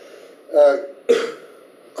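A man clearing his throat: two short vocal sounds a little over half a second apart.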